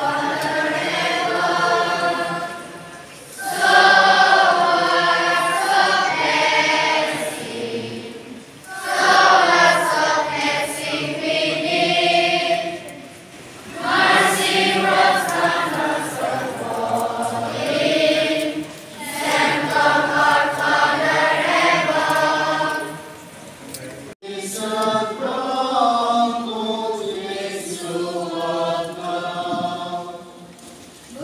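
A large group of schoolchildren singing a song together in unison, in long phrases with short breaths between them.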